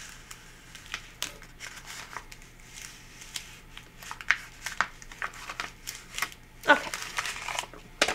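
Paper backing being peeled slowly off adhesive vinyl letters stuck to reused transfer tape: a run of small crackles and paper crinkles, loudest a little before the end as the sheet lifts away.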